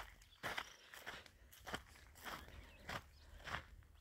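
Faint footsteps on a dry dirt track, about six steps at a walking pace, with a light crunch of dry ground and grass underfoot.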